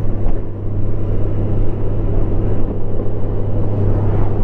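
A 2019 Honda Gold Wing Tour's flat-six engine humming steadily while riding, mixed with wind and road noise. The hum holds one steady low pitch with no change in revs.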